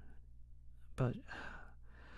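A man says a short word about a second in and trails off into a breathy sigh.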